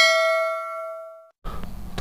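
Notification-bell 'ding' sound effect from a YouTube subscribe-button animation: one bright metallic ring that fades out over about a second. Faint hiss follows near the end.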